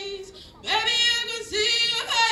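A woman singing solo into a handheld microphone: a note dies away, a short break follows about half a second in, and then two more sung phrases come.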